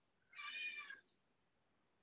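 A single faint, short meow from a cat, about half a second long.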